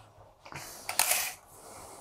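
A retractable tape measure being pulled out: a faint rasp about half a second in, then a louder, brief rasping rattle around one second.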